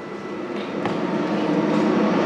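A rushing, rumbling noise with a few faint steady tones, growing steadily louder.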